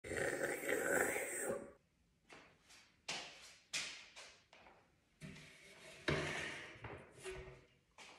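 A mug handled and rubbed close to the microphone for about a second and a half, then a string of light knocks and bumps, about five, each dying away quickly.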